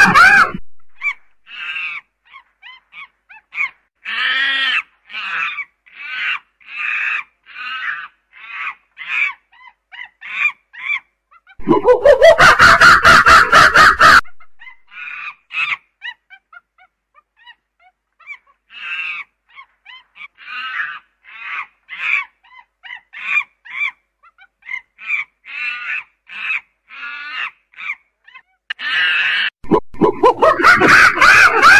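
Primate calls: a run of short, quick calls, under two a second, broken about twelve seconds in by a long, loud call that rises in pitch and lasts a couple of seconds. A second run of short calls follows, and another loud call starts near the end.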